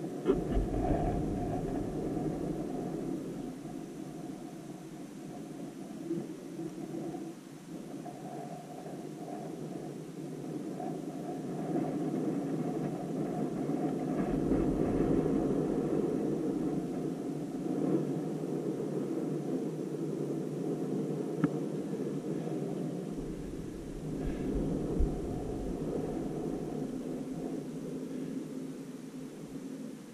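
Wind blowing on the camera microphone: a steady low rush with deeper buffeting gusts at the start, around the middle and again near the end, plus a couple of small clicks.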